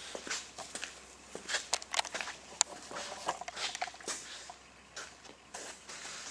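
Camera handling noise: irregular clicks, taps and rustles as the camera is picked up and moved in closer.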